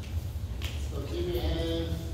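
A child's voice giving a drawn-out, slightly wavering call that starts about a second in, over a steady low hum in the hall.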